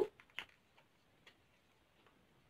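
A few faint, short crinkles and ticks from a thick, paper-like sheet-mask sachet being handled and gripped at the corner to tear it open.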